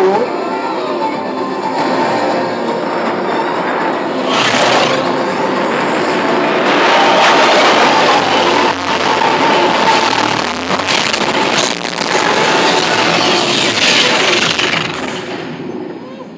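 TRON Lightcycle Power Run coaster train running at speed: a loud rush of wind and track noise over the ride's onboard soundtrack music, with a few sharp whooshing surges. It falls away near the end.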